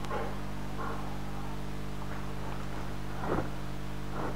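Steady low electrical hum, with a few faint short sounds over it, the loudest a little after three seconds in.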